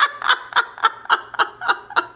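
A woman laughing: a run of short, breathy laughs, about four a second, that stops near the end.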